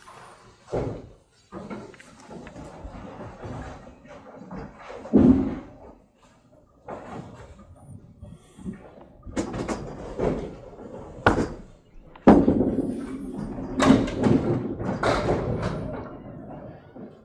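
Candlepin bowling alley sounds: small wooden-lane balls landing and rolling, and pins being knocked down and clattering, as a string of sharp knocks and crashes that is busiest and loudest in the last few seconds.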